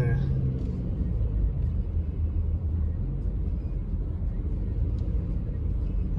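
Subaru Forester driving, heard from inside the cabin: a steady low rumble of engine and tyres.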